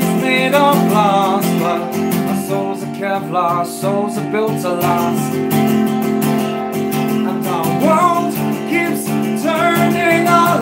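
Acoustic guitar strummed steadily, with a man's voice singing over it at times, mostly near the start and again near the end.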